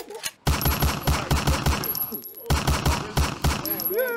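Two rapid runs of loud, evenly spaced thumps, about seven a second, sounding like machine-gun fire. The first run starts about half a second in; the second follows a short break a little past two seconds.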